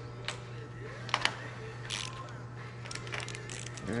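Scattered light metallic clicks and clinks of a socket and hand tools being handled on a diesel engine's rocker-shaft studs, irregular, a few each second, over a steady low hum.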